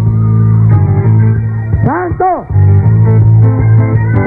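Loud live worship music with guitar and bass over a steady low note, and two short rising-and-falling glides about halfway through.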